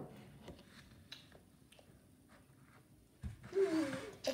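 Mostly quiet room with a few faint clicks of plastic forks as children start eating cake, a soft thump a little after three seconds, then a short falling vocal sound from a child near the end.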